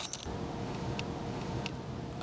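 Quiet handling sounds: a few light clicks as a clear plastic bag and a small cabled plastic part are handled, over a faint steady hum.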